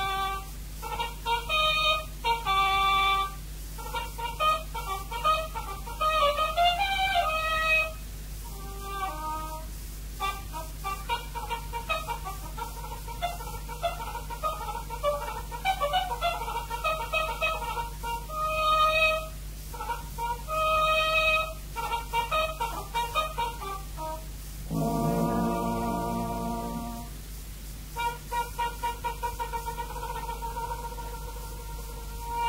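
B-flat trumpet playing a solo showpiece in quick runs and short phrases, with a fuller, lower sustained chord sounding for about two seconds near the end. A steady low hum runs underneath.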